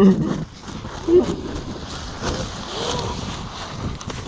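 Short vocal shouts, one right at the start and another about a second in, over steady background noise.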